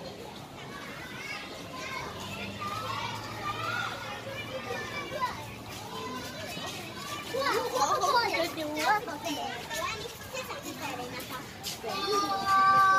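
Many children's voices calling and chattering at once, with several high voices loudest and closest from about seven to nine seconds in.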